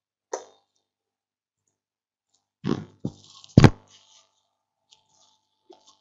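A cat making noise close to a desk microphone: a few short scuffs and knocks, the loudest a sharp thump a little past halfway. A computer mouse click comes near the start.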